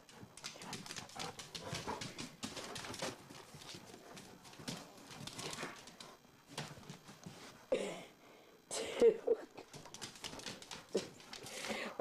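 A dog playing tug-of-war with a toy, heard close up: irregular scuffling and rustling, with a few short vocal sounds near the end.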